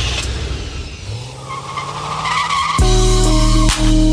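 A car engine revving with tires skidding and squealing, used as a sound effect in a song's intro. About three seconds in, the full music beat drops in and is louder.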